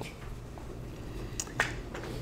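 Quiet room tone with a low steady hum, and a short click or two close together about a second and a half in.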